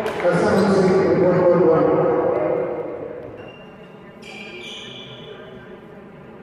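Men's voices calling out in a large echoing sports hall, with a sharp knock right at the start; the voices die away after about two and a half seconds, leaving a faint steady tone.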